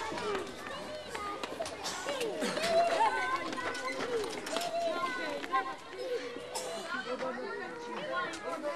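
Indistinct chatter of several people's voices overlapping, with scattered short clicks and knocks.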